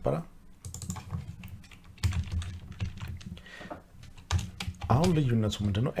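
Computer keyboard typing: a quick run of key clicks as a word in a query is deleted and retyped, stopping about four seconds in.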